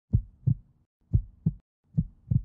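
A heartbeat sound effect: deep double thumps, lub-dub, two beats about a second apart.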